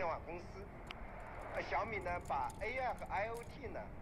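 Voice of an AM radio broadcast picked up by a crystal radio, heard at a lower level than the narration, with a continuous run of speech. At this moment the radio's detector is an HSM-2850 diode.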